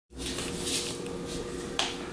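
A single sharp click near the end, over a steady low hum and some soft rustling.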